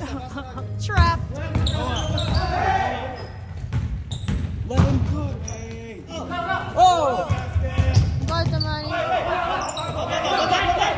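Basketball bouncing on a hardwood gym floor during live play, several sharp bounces and impacts, with players' voices calling out, all echoing in a large gymnasium.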